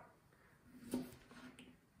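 A single faint click of a kitchen knife blade on a plastic cutting board about a second in, as a garlic clove is cut through.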